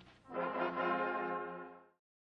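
Cornet-and-drum band's final chord: the bugles enter about a quarter second in on one held brass chord with no drums beneath it, which fades away and stops just before the end, closing the march.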